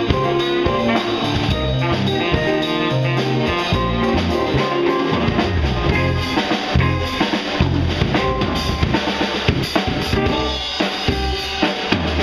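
Live band playing: drum kit with bass drum and rimshots driving it, over electric bass and guitar. The drum strikes grow busier in the second half.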